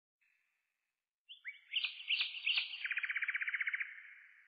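A songbird singing: a few sharp chirping notes starting about a second and a half in, running into a fast, even trill, then trailing off with an echo.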